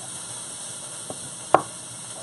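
Pork belly sizzling steadily in a hot pan while a knife slices raw pork belly on a cutting board, with a faint click about a second in and one sharp knock of the blade on the board about one and a half seconds in.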